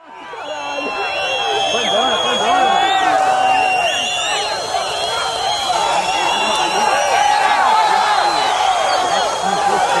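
A large outdoor crowd shouting and cheering over one another, many voices with high held cries, fading in over the first couple of seconds and then staying loud, as the giant paper balloon is raised.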